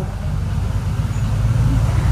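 Steady low rumble of background noise from a mobile phone on speaker held up to a microphone, heard in a pause in the caller's speech.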